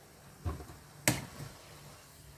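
Wooden spatula knocking once against a nonstick wok: a single sharp click about a second in, after a softer thump, as dry cellophane noodles are worked into the pan.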